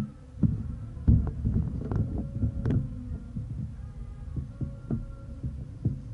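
Microphone handling noise from a handheld camera being moved: irregular low thuds and rumbling, with a few sharp clicks between about one and three seconds in.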